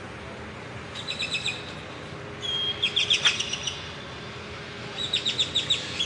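A bird chirping in three short bursts of quick, high, repeated notes: one about a second in, one around the middle that opens with a brief held note, and one near the end. Under them runs a steady low background hum.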